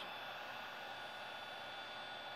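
Cordless heat gun blowing hot air onto a piece of polycarbonate to soften it for bending: a steady airy hiss with a faint high whine.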